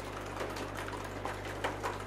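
Scattered, irregular clicks of computer keyboards being typed on, over a steady low electrical hum.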